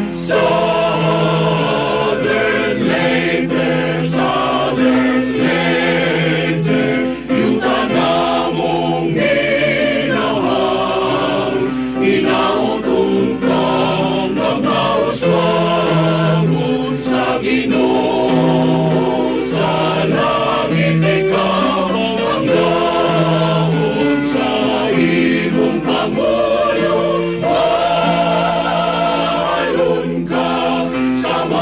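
A choir singing a hymn in Cebuano, in slow, sustained chords.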